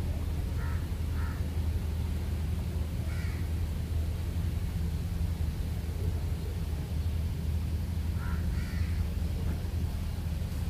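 A bird gives short, harsh calls: two about a second in, one about three seconds in, and two more near the end, over a steady low rumble.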